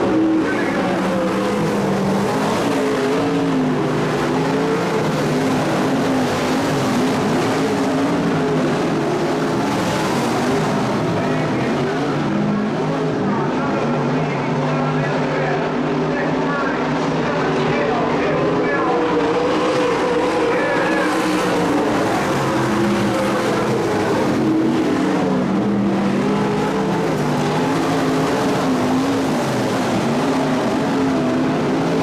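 Several dirt-track modified race cars' engines running around the track, their pitch rising and falling as they throttle up and back off, heard at a distance from the grandstand.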